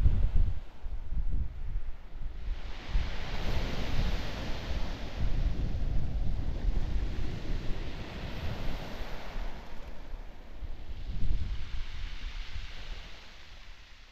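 Sea water washing and lapping at the surface, with wind noise on the microphone. Two swells of surf hiss come and go, and the sound fades out near the end.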